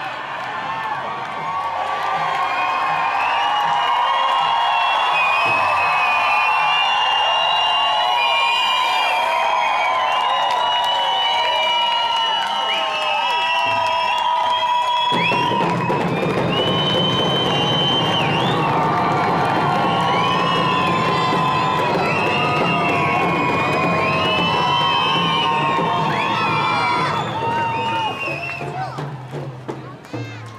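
A large crowd singing and whooping together over hand drums, many voices overlapping, typical of a round dance song; it fades near the end.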